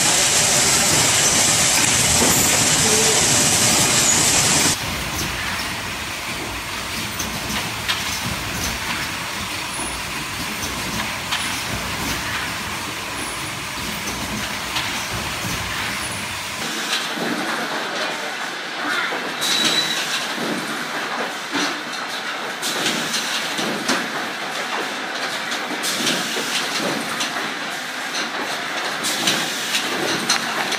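Music for the first five seconds or so, cut off suddenly, then the running clatter of pneumatic lighter-assembly machines on a factory floor: irregular clicks and clacks of air cylinders with a steady hiss, the clicks growing sharper and more frequent past the middle.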